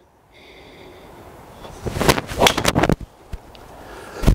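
Driver hitting a golf ball off a mat indoors: a sharp strike about two seconds in, followed within a second by further knocks as the ball hits the simulator screen.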